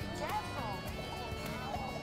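Background chatter of voices and music playing, with a few light clicks of cutlery on a plate.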